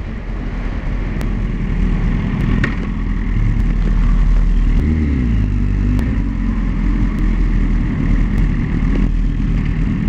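Motorcycle engine running while riding, getting louder over the first few seconds, with a shift in engine pitch about five seconds in, over a steady rush of road and wind noise.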